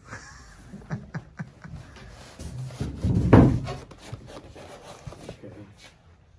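Loudspeaker packaging being handled: scattered knocks and clicks with cardboard and plastic rustling, and one louder rustling thump a little past halfway.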